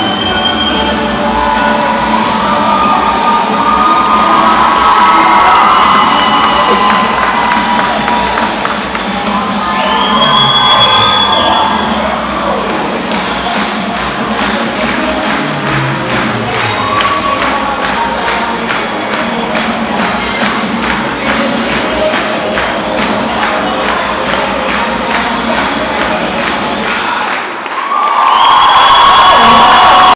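Cheerleading routine music mix played loud over an arena PA, with a crowd cheering and screaming over it. A steady, fast beat runs through the second half; near the end the sound dips for a moment, then the cheering swells loudly.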